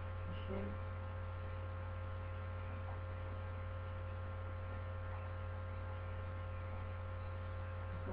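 Steady low electrical hum, mains hum carried on the recording, holding at an even level.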